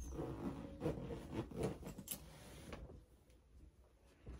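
Clothes and fabric rustling as they are handled and moved about, with a few soft knocks, dying down near the end.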